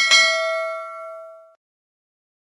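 Notification-bell ding sound effect: one bright chime that rings out and fades away over about a second and a half.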